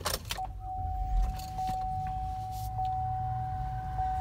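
Buick Enclave's 3.6-litre V6 being started: a few clicks, then a brief low crank that catches about a second in and settles into a quiet idle. A steady high tone starts just before the crank and holds throughout.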